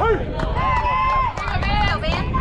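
Several voices yelling at once, with drawn-out shouts, as a batted ball is put in play. Low wind rumble on the microphone runs underneath.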